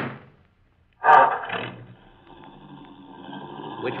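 Radio-drama sound effect of a car engine starting about a second in with a loud burst, then running steadily and slowly growing louder.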